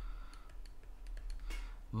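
Faint, scattered clicks and taps of a stylus tip on a tablet screen while handwriting, over a steady low hum.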